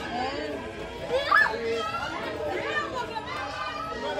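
Indistinct chatter of several people talking over one another, children's voices among them, with one louder, higher voice rising about a second and a half in.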